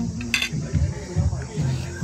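Metal cutlery clinking against a plate, with one sharp clink about half a second in, over faint background music.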